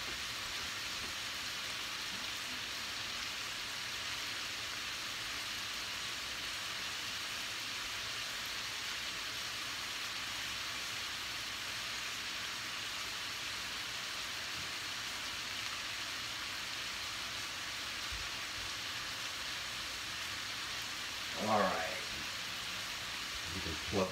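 Crumbled sausage and onions sizzling steadily in a stainless steel skillet.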